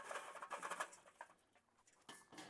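Hot charcoal briquettes pouring out of a chimney starter into a Slow 'n Sear insert in a Weber kettle grill: a rapid clatter of coals tumbling onto coals and metal, fading out over about a second.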